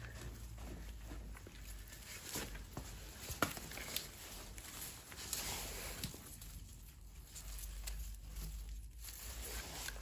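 Gloved hands scooping and pressing loose potting soil around lemongrass roots in a plastic pot: faint rustling and crumbling, with a few small knocks.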